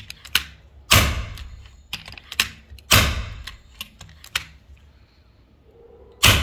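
FX Impact M3 PCP air rifle fired twice, about two seconds apart, each shot a sharp crack that fades quickly. Lighter mechanical clicks fall between the shots.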